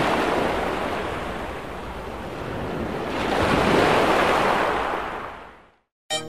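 Ocean surf: a wash of waves that swells twice, the second surge about three and a half seconds in, then fades out near the end.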